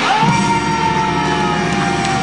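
Live musical theatre number: the band plays under one long held high note that scoops up at the start and then sags slowly in pitch.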